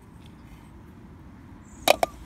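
Faint steady background, then a single sharp tap, a hard object striking something, near the end.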